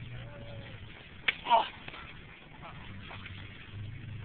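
A single sharp smack of a body landing on the floor in a practice throw, followed at once by a short "oh".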